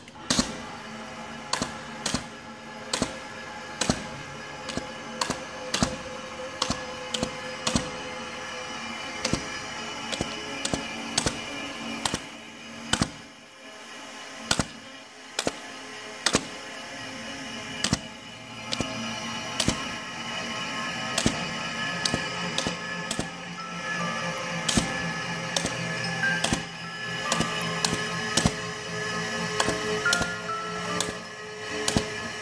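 A 20-note paper-strip music box plinks out a tune while an automatic hole-punching machine clacks through the paper strip that feeds it, with sharp, uneven punch strokes about two a second.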